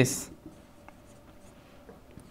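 Marker pen writing on a whiteboard, a faint scratching with a few light ticks.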